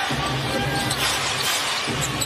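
Basketball arena ambience from a game broadcast: steady crowd noise with music playing over it.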